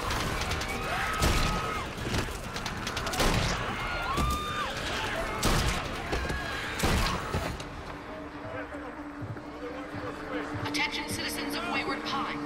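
Gunshots in a film's night battle scene: four loud single shots, roughly two seconds apart, amid shouting. After the last shot it falls quieter over a low sustained music tone.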